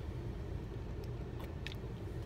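Steady low rumble of a car cabin's background noise, with a couple of faint clicks past the middle.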